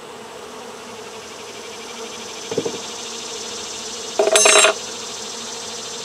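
Honeybees buzzing steadily around an open hive, a continuous hum of many bees in flight. A faint knock comes about two and a half seconds in, and a brief loud burst of noise a little past four seconds.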